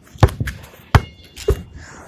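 Basketball being dribbled: three bounces about two-thirds of a second apart.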